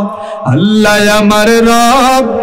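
A man's voice chanting a devotional verse through a microphone: a brief breath near the start, then one long, melodic note with a wavering pitch.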